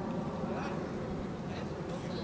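Steady outdoor background noise, a low even rumble, with faint distant voices.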